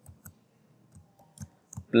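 Computer keyboard being typed on: about half a dozen light, separate key clicks at an irregular pace.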